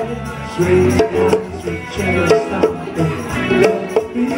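A live funk band jamming: a bass line under drums, with conga and hand-percussion strikes.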